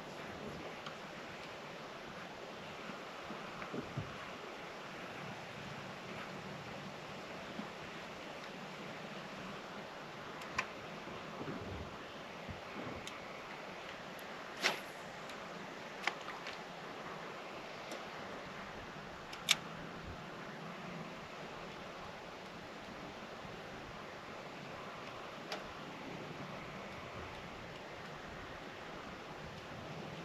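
Faint, steady background hiss of open-air boat ambience, broken by a handful of isolated sharp clicks and taps, the loudest about halfway through.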